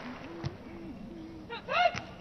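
A beach volleyball struck by a player's arms or hands with a short sharp hit about half a second in, over a faint murmur from the crowd. Near the end a player gives a short high-pitched shout, just before another hit on the ball.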